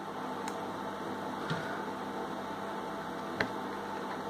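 Steady low background hum with a few faint small clicks, the loudest about three and a half seconds in, from wire leads being handled and pushed into a plastic solderless breadboard.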